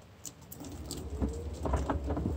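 Wheelchair wheels rolling over a dirt garden path: scattered small clicks and crackles of grit under the wheels, with a low rumble that builds about half a second in as it gets moving.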